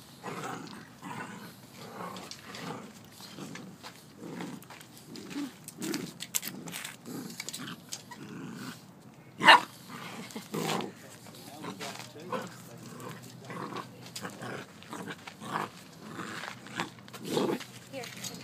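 Two golden retriever puppies play-fighting, with short, repeated growls and grumbles through the wrestling and one loud, sharp yip about halfway through.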